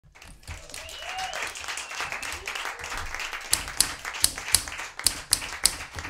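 Manual typewriter typing: a quick run of key strikes, then from about halfway through louder, separate strikes, about three a second.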